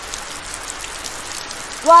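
Steady hiss and patter of water spray falling like heavy rain. A voice starts right at the end.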